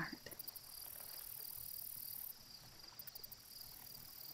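Faint ambience of crickets chirping steadily. A higher, shrill layer above them cuts off a little past two seconds in and comes back in a few short pulses around three seconds.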